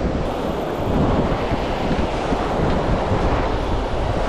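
Surf breaking and washing up the sand, with wind buffeting the microphone.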